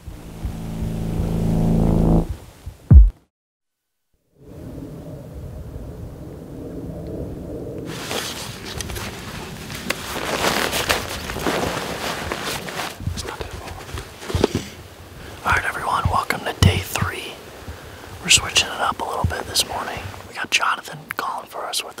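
Intro music swells and ends on a sharp hit, followed by a second of silence. About eight seconds in, rustling and crunching of footsteps through dry sagebrush begins, and from about halfway on low whispered speech joins it.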